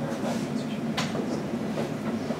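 Steady low room rumble of a lecture hall, with one sharp click about halfway through.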